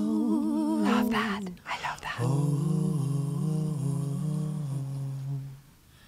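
Two voices humming a slow, wordless harmony in held notes with vibrato: a short phrase, a breath, then one long phrase stepping between notes that breaks off just before the end. This is the haunting hummed intro harmony of an acoustic vocal duet.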